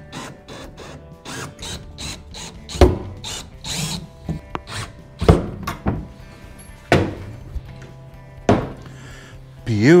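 Cordless drill/driver running in short bursts, driving stainless truss screws through a steel hinge into a plywood cover board. Four sharp knocks come a second or two apart, with background music throughout.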